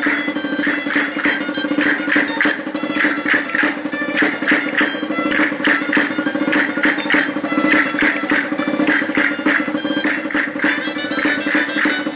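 Traditional dance music on gaita pipes: a sustained, reedy piped tune, with sharp clicks keeping a regular beat.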